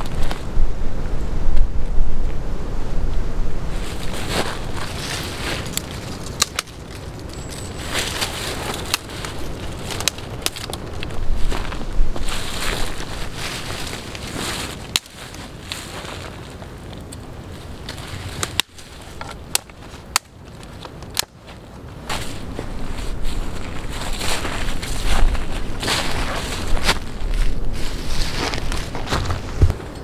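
Small stick campfire catching and crackling, with scattered sharp pops and snaps, while gusts of wind rumble on the microphone.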